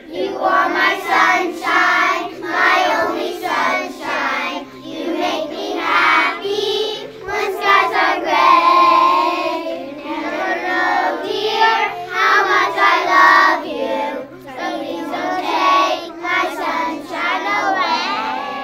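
A kindergarten class singing a song together, many young voices at once, continuously.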